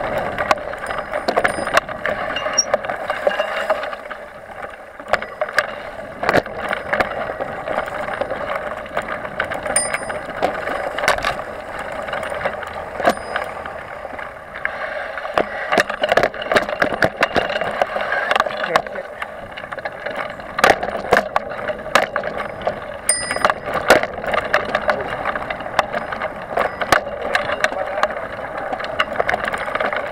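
Mountain bike ridden fast down a bumpy dirt trail: steady tyre and wind rush with frequent sharp knocks and rattles from the bike over roots and bumps, and a couple of short high rings.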